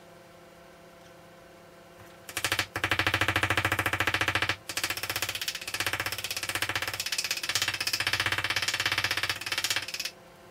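A hammer tapping fast and evenly on the zinc sheet edge of a table top, forming the metal over the wooden substrate. It starts about two seconds in, stops briefly near the middle, then goes on until just before the end.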